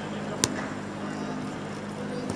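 Outdoor ambience of a cricket fielding practice: a steady low hum with a single sharp crack about half a second in.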